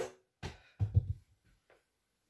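A plastic cricket bat hitting a tennis ball once with a sharp knock, followed about half a second later by a couple of dull low thuds.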